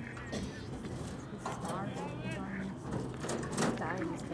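Indistinct voices of spectators and players calling out across an outdoor sports field, with a few brief knocks over a low steady hum.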